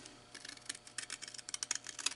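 Scissors cutting through folded paper: a quick, irregular run of small snipping clicks.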